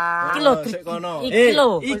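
A person's drawn-out wordless vocalizing: a held note, then several swoops that rise and fall in pitch.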